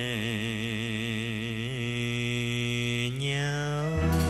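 A man singing in cải lương style, holding one long drawn-out note with a wide, even vibrato, then sliding the pitch upward near the end.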